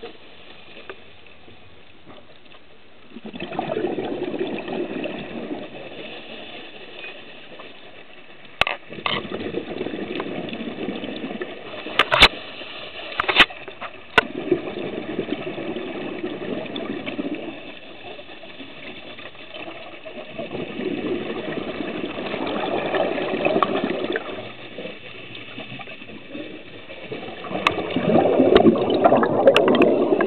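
Scuba diver breathing through a regulator underwater: about five long, noisy bursts of exhaled bubbles a few seconds apart, with quieter stretches between. A few sharp clicks fall in the middle.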